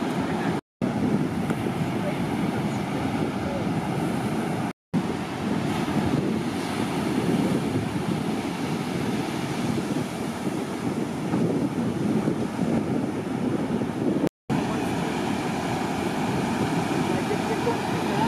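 Steady wash of breaking surf with wind on the microphone, broken three times by brief dropouts to silence.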